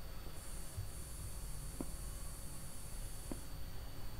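Quiet room tone: a low steady hum with a faint high hiss, and two faint single clicks about a second and a half apart, near the middle and near the end.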